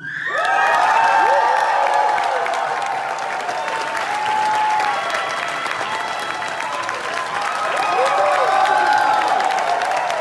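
A large crowd breaks into applause and cheering all at once, many voices shouting and screaming over the clapping. It swells about a second in, eases, then swells again near the end.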